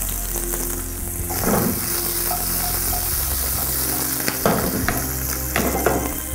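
Sliced onions and diced green capsicum sizzling steadily in oil in a non-stick frying pan, with a few short scrapes of a wooden spatula stirring them.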